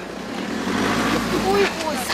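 A bus engine idling with a steady low hum, with people's voices talking over it around the bus door.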